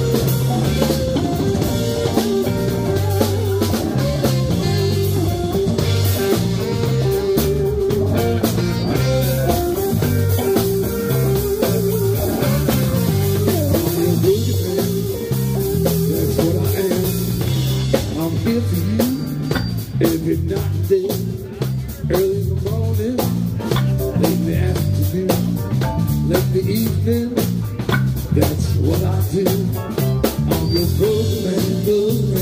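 Live band playing an instrumental jam: electric guitars and keyboard over a steady drum kit beat.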